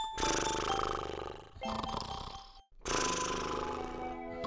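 Rustling of bed covers being handled, cut off by a brief dropout about two and a half seconds in before similar rustling resumes.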